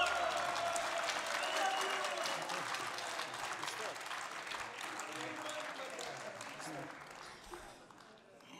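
Audience applauding at the end of a piece, the clapping dying away gradually.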